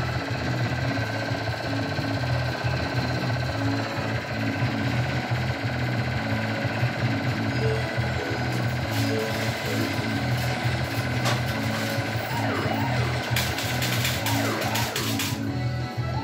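Monopoly fruit machine playing its electronic feature music over a rapid, steady buzzing rattle while its prize total climbs. Near the end come a run of sharp clicks and quick rising and falling notes.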